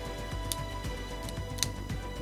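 Background music with a steady beat. Two sharp, short clicks cut through it, one about half a second in and a louder one near the end.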